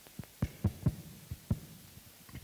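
Six or so short, dull low thumps at uneven spacing over two seconds.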